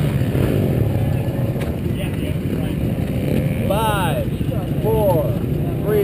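Dirt bike engine idling at a standstill, heard close up from the bike, a steady low rumble. A person's voice comes in over it a few seconds in.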